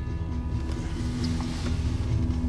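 Toyota Land Cruiser FZJ80's straight-six engine running steadily, a low drone heard from inside the cab.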